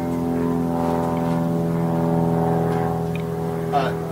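A steady machine drone: a low hum with several fixed tones stacked above it, holding pitch without change.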